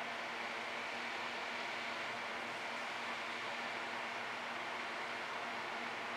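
Steady background hiss with a faint constant hum and no distinct events.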